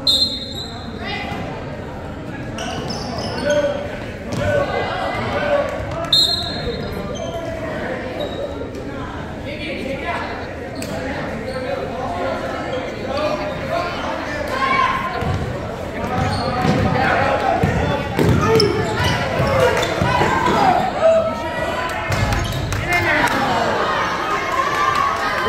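A basketball bouncing on a hardwood gym floor, with players and spectators talking and calling out throughout. The bouncing and voices are echoing, and both get busier in the second half as play picks up.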